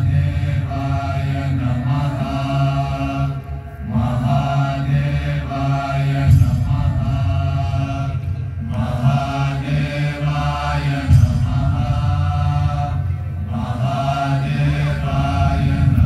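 Mantra chanting set to music over a low, steady drone, sung in repeated phrases of about four to five seconds with short breaks between them.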